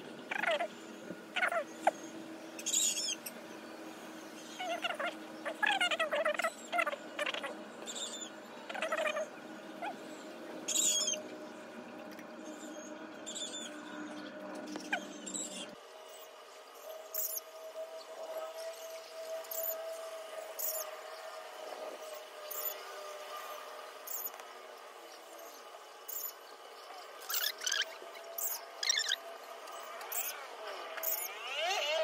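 Birds chirping now and then over a steady low hum that stops suddenly about halfway through.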